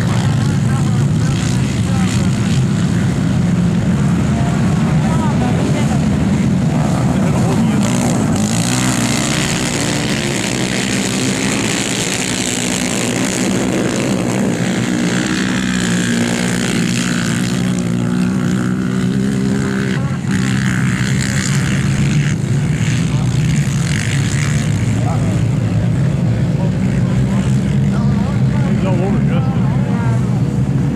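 Several ATV engines racing together in a steady, loud drone, their pitch rising and falling as the riders accelerate and back off.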